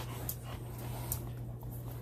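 A small dog panting softly close to the microphone, over a steady low hum.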